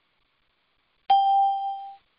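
A single electronic notification ding about a second in, a clear bell-like chime that rings for just under a second and then cuts off.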